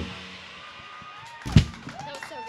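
A live band's held final chord, on electric guitars, drums and keyboard, stops right at the start. After a short quiet comes one sharp low thump about a second and a half in, the loudest sound here.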